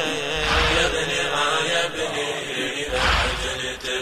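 A Shia latmiyya mourning chant: voices chanting, with a deep rhythmic thump about every two and a half seconds.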